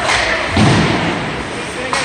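Ice hockey play in an indoor rink: a sharp stick-on-puck click at the start, a heavy thud about half a second in, and another sharp click near the end, over a background of voices and rink noise.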